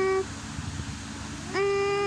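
A voice humming a repeated two-note phrase, each time a held higher note that steps down to a lower one. One phrase ends just after the start, and the next begins about one and a half seconds in.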